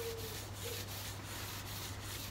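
Faint rubbing and rustling handling noise, over a steady low hum.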